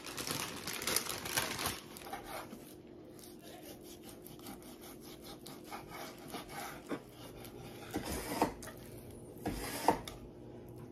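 Chef's knife cutting through raw pork shoulder on a wooden cutting board, with scraping, sawing strokes in the first two seconds and a few knocks of the blade on the board near the end.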